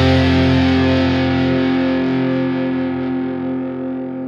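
Pop-punk band's final chord on distorted electric guitar, several notes held and ringing out, slowly fading away at the end of the song.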